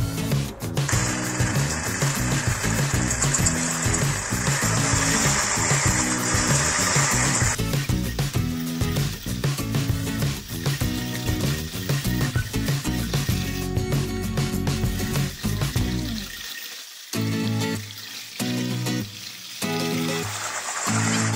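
Background music over liquid being poured and whisked: goat milk poured gradually into a cocoa, sugar and egg-yolk mixture and stirred with a hand whisk in a steel saucepan, giving a steady splashing hiss for the first several seconds.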